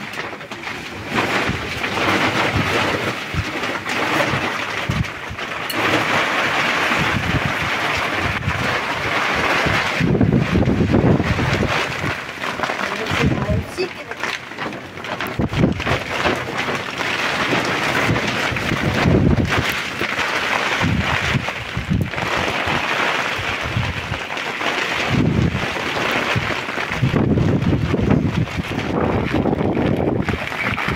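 Rain and wind: a steady hiss of rain, with gusts of wind buffeting the microphone in low rumbles about ten seconds in, near twenty seconds, and again toward the end.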